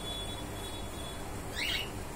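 A short bird chirp about one and a half seconds in, over a steady low hum.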